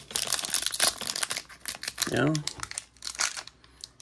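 Donruss basketball card pack's shiny wrapper being torn open and crinkled in the hands: a dense crackling for about two seconds, then a few more crinkles about three seconds in.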